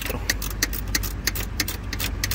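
Quick, irregular metallic clicks, about six a second, of a 10 mm wrench working a bolt on the parking-brake pedal bracket, over a steady low hum.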